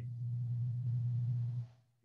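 A steady low hum that holds one pitch, then fades out about a second and a half in.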